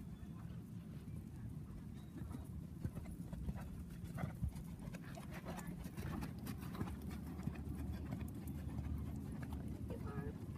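Hoofbeats of a ridden horse moving over the sandy footing of a dressage arena, a run of soft thuds that grows clearer in the middle as the horse passes close by, over a low steady rumble.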